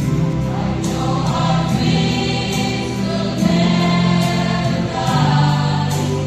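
Live choir singing in long held notes, the pitch shifting every second or so.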